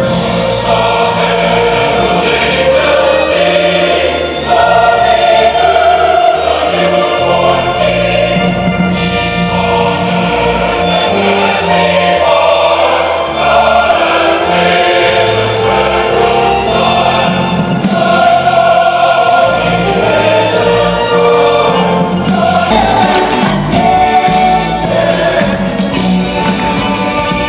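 Music with a choir singing over orchestral accompaniment, loud and continuous.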